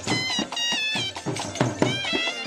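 Live folk music: a shrill reed pipe plays a bending, wavering melody over quick strokes on a dhol drum.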